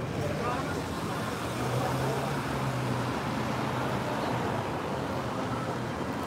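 City street traffic: cars driving past close by, with a low steady engine hum from about one and a half to three seconds in.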